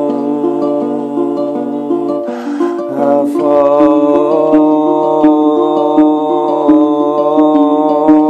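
Guitar picked in a repeating pattern over a steady low bass note, with a man's voice singing long, wordless, chant-like notes over it from about three seconds in.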